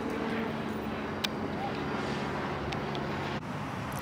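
Steady hum of vehicle traffic, with a single short click about a second in.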